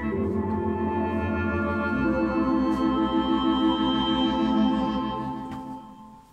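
Organ music: sustained chords with a regular pulsing tremolo, moving to a new chord about two seconds in, then fading out near the end.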